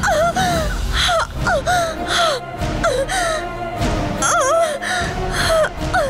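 A woman's short, repeated gasping cries of "aah", each bending up and down in pitch, coming about two a second over background music with a low drone.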